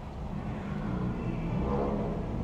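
A motor vehicle on the street, its engine running with a low steady rumble that slowly grows louder as it comes closer.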